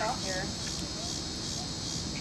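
Chorus of insects such as crickets, singing in the darkness of totality: a steady high-pitched trill that swells and fades a couple of times a second.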